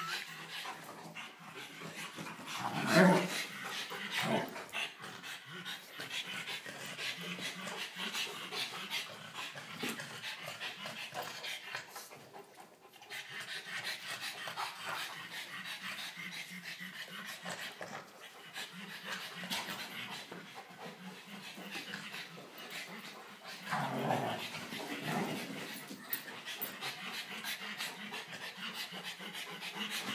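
A Rottweiler and a pug panting hard and scuffling during rough play, with small clicks and rustles of movement throughout. There are louder moments about three seconds in and again near 24 seconds; the Rottweiler is tiring out.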